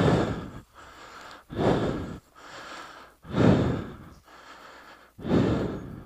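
A man breathing hard close to the microphone, about one breath cycle every two seconds: a loud breath followed by a quieter one, over and over, from the effort of walking on slippery, soft mud.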